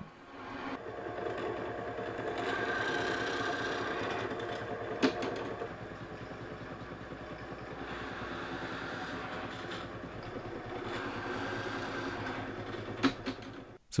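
1950s Startrite pillar drill running with a steady motor hum, its 15 mm Forstner bit boring into pine. There is a sharp click about five seconds in and a few knocks near the end.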